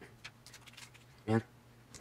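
Thin plastic screen-protector film handled by hand: a few faint, short clicks and rustles in the first second. A single muttered word follows about a second in.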